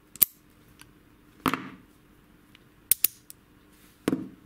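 Brass padlocks being handled, with one set down on a workbench: a sharp metallic click just after the start, a knock about a second and a half in, and two quick clicks near the end.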